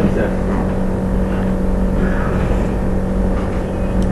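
Steady low hum with a constant background noise floor, unbroken and without any distinct events.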